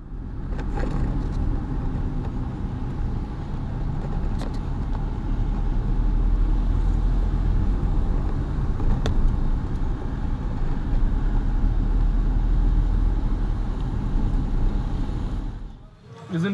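Steady low rumble of a car's engine and tyres on a wet road, heard from inside the cabin, with a few sharp clicks.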